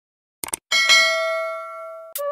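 A quick double mouse click, then a bell ding that rings on with several tones and slowly fades. It is the subscribe-and-notification-bell sound effect of an end-screen animation.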